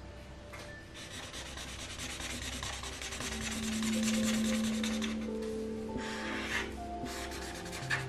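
Felt-tip marker rubbing back and forth on paper in quick colouring strokes, busiest in the first half, with soft background music notes coming in about three seconds in.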